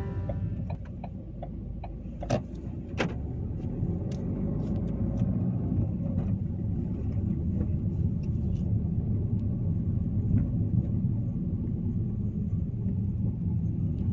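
Road noise inside a moving car: a steady low rumble of engine and tyres that grows slightly louder as the car gathers speed. There are two sharp knocks about two and three seconds in.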